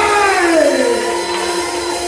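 Live church band music at a break: the drum kit stops and a held keyboard chord rings on, with a long downward pitch glide over it about half a second in.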